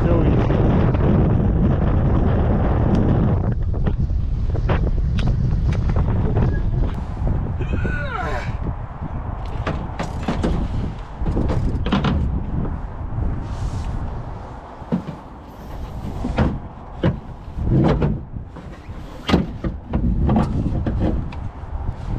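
Wind buffeting the microphone during an e-bike ride for the first few seconds. It then gives way to a run of knocks and clunks as a fat-tyre e-bike is lifted and set down over a pickup truck's tailgate pad, with the loudest knocks past the middle.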